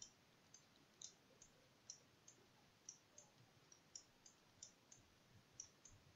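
Faint, irregular light clicks, about two or three a second, from a stylus on a pen tablet as a word is handwritten on screen, over near silence.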